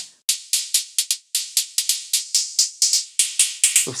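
Drum-machine hi-hat pattern from a TR-606-style kit preset in the VPS Avenger synth: a quick, even run of short, bright hits at about seven a second, with no bass drum underneath.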